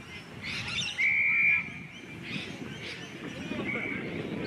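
Umpire's whistle: a steady half-second blast about a second in and a shorter one near the end, over distant shouts from players.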